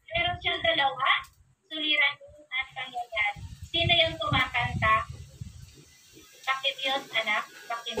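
Speech: a voice talking in short phrases with brief pauses.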